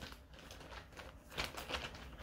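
A few faint clicks and light rustles of handling, mostly in the second half, over a low steady hum.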